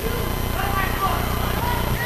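Football stadium ambience: faint distant voices and shouts from the pitch and stands over a steady low hum.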